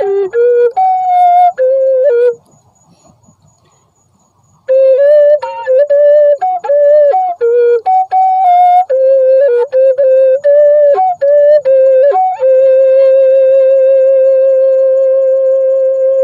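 Solo flute-like melody of short stepping notes. It breaks off for about two seconds, resumes, and ends on one long held note.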